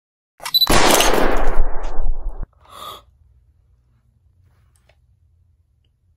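Loud burst of gunfire, a sound effect lasting under two seconds that cuts off suddenly, followed by a brief quieter noise.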